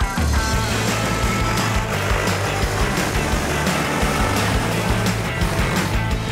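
Background music over the steady low hum of a DJI Agras T40 spray drone's rotors in flight.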